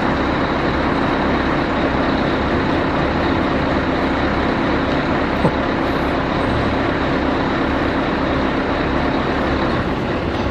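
Heavy diesel truck engine running steadily with a constant hum and a thin high whine, powering a tow truck's hydraulic underlift as it raises a fire truck's front end. A single small click about halfway through.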